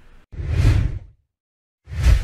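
Two whoosh sound effects accompanying an animated logo transition, each just under a second long, with a moment of dead silence between them.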